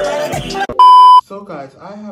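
A rap song cuts off suddenly, then a loud, steady high-pitched bleep tone sounds for under half a second. It is an edited-in bleep of the kind used to censor a word, and quiet speech follows.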